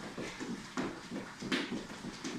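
Two people jogging on the spot with high knees, their trainers striking a tiled floor in a steady run of footfalls, about four a second.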